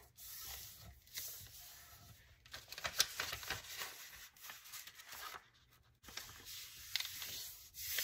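Paper napkin fused to freezer paper rustling and rubbing faintly as it is folded by hand and its creases pressed flat, with a few sharper crackles about three seconds in.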